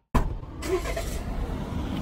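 A car's engine idling, a low steady rumble that starts abruptly after a moment of silence.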